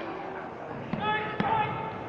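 A high-pitched voice call held for about a second, starting about a second in, with two sharp thuds during it, over a steady murmur of background voices.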